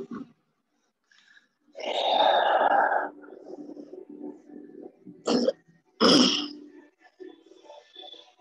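A person coughing and clearing the throat: a longer rasping sound about two seconds in, then two short coughs at about five and six seconds.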